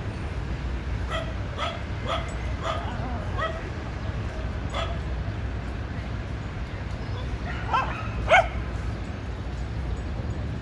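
A small dog yipping in short, high barks during rough-and-tumble play: a quick run of yips in the first few seconds, one more about five seconds in, then two louder ones near the end. A steady low rumble runs underneath.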